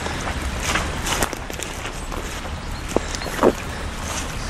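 Swollen brook rushing steadily over its bed, high enough to flood a footbridge, with a few footsteps on the grassy bank.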